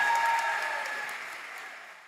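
Audience applauding, fading out near the end.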